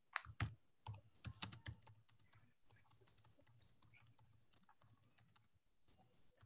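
Faint computer keyboard typing: a quick run of key clicks in the first two seconds, then a few scattered taps over a faint low hum.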